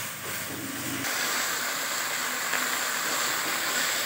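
Minced chicken and onions frying in oil in a wok, a steady sizzling hiss that gets a little louder about a second in, as a wooden spatula stirs them. The chicken is giving off a little water as it cooks.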